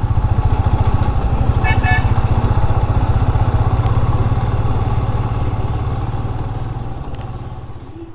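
Motorcycle engine running steadily under way, with a short horn beep about two seconds in. The engine sound slowly fades over the last few seconds.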